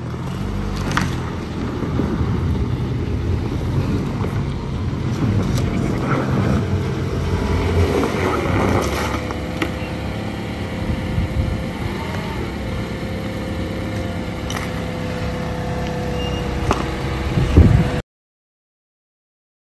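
Toyota RAV4 engine running steadily, with a brief loud thump just before the end.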